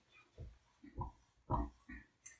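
Dry-erase marker writing on a whiteboard: about five short, faint squeaks and taps spread over two seconds.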